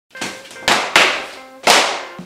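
Four sharp percussive hits, each fading quickly, over a faint steady tone, as in the opening hits of a music intro.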